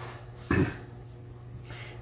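A pause in speech: steady low hum of room tone, with one brief short noise about half a second in.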